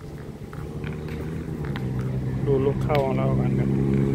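A motor vehicle engine running steadily and growing louder as it draws near, with a few light clicks. Voices come in near the end.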